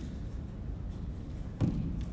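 A rubber lacrosse ball thrown against a concrete-block wall, striking it once with a sharp thud about one and a half seconds in, over a low steady room hum.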